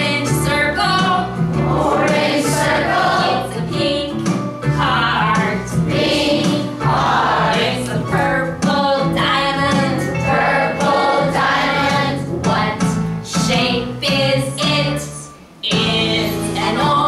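Children's English echo song about shapes, with lines like "It's a purple diamond" and "What shape is it?", sung by a group of voices over a steady accompaniment. The sound dips briefly near the end.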